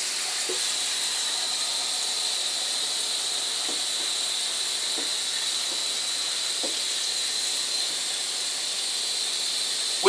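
A steady, even hiss with a thin high tone running through it, and a few faint clicks.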